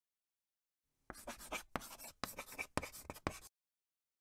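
Chalk scratching on a blackboard in a quick run of short strokes, starting about a second in and stopping shortly before the end, as if writing out a logo.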